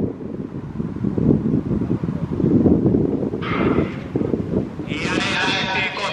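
Wind buffeting the microphone throughout, then people's voices shouting from about three and a half seconds in, rising to a sustained wavering shout near the end.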